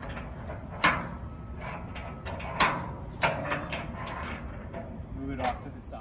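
Metal clanks and clicks of a Brandon FHD dump body's tailgate safety door locks being pulled off and set aside: four sharp metallic knocks spread over a few seconds, over a steady low rumble.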